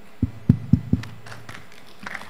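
Four dull low thumps in quick succession within the first second, followed by a few faint clicks.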